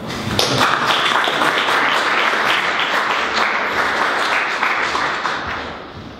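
Audience applauding: many overlapping claps that fade away near the end.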